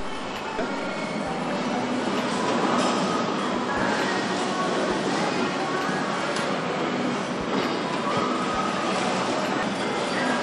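Steady mechanical noise with occasional light clanks.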